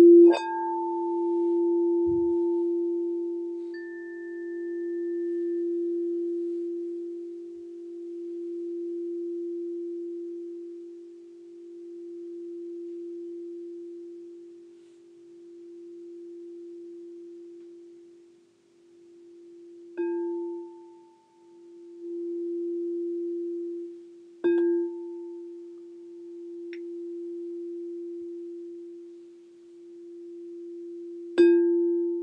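Crystal singing bowl ringing with one low, steady tone that swells and fades in slow waves. It is struck with a mallet just after the start, again about twenty seconds in, and once more a few seconds later, each strike adding a brief higher ring.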